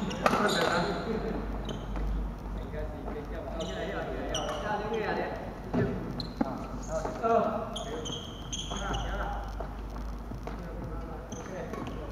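Voices echoing in an indoor sports hall, with short high squeaks of shoes on the wooden court floor around the middle and a few sharp knocks.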